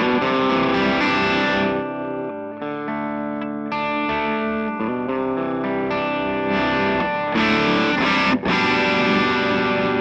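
Electric guitar played through the blue channel of a Suhr Eclipse overdrive pedal into a guitar amp: held, heavily driven chords that change every second or so, with a brief break about eight seconds in. The tone is gritty enough that the player rates the pedal as more of a distortion than an overdrive.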